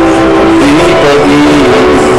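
A person singing loudly over backing music, holding long notes and sliding between them.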